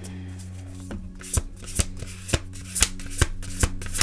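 Tarot cards being shuffled by hand: a run of about seven sharp card slaps, roughly two a second, with a low steady hum underneath.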